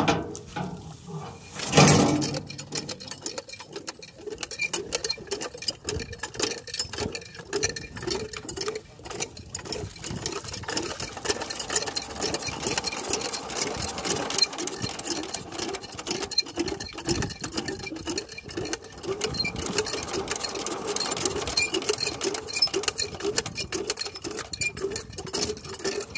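Small single-cylinder diesel water-pump engine running with a rapid clatter and a slower, steady beat of about two to three strokes a second. There is one loud knock about two seconds in.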